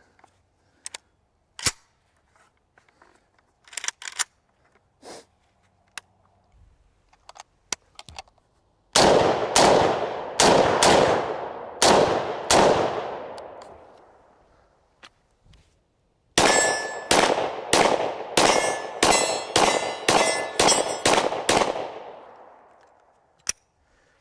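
Springfield Armory M1A Scout Squad .308 rifle: light clicks and clacks of a magazine being seated and the rifle readied, then about six gunshots about nine seconds in, each echoing away. About sixteen seconds in comes a faster string of about a dozen shots with a faint ringing note.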